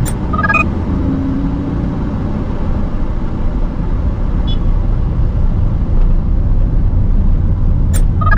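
Steady low rumble of a manual car's engine and road noise heard inside the cabin as the car pulls away in first gear and gathers speed, getting slightly louder about six seconds in. A short electronic chime sounds at the start and again at the end.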